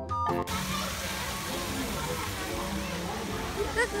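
Background music cuts off about half a second in. Then a steady rush of water in an amusement-park boat-ride channel runs on, with faint voices.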